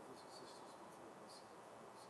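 Near silence: faint outdoor background with a few brief, soft high-pitched ticks.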